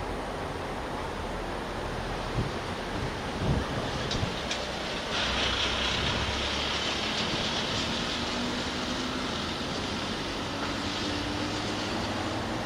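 JNR 489 series electric train moving away along the track: a steady hiss with a few knocks about two to four seconds in. A brighter hiss comes in at about five seconds, and a faint tone rises slowly in pitch through the second half.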